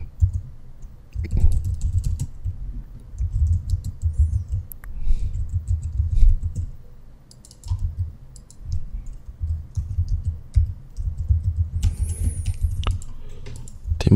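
Typing on a computer keyboard: uneven runs of keystrokes with short pauses between them.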